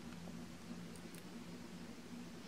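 Quiet room tone with a faint, steady low hum and a couple of faint clicks about a second in.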